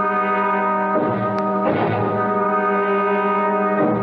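Dramatic brass music cue: a loud, held brass chord that swells about a second in and again just before two seconds.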